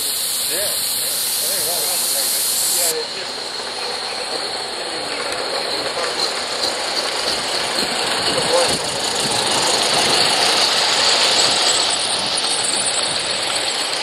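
Live steam model locomotive running past on the track, with a steady hiss of steam.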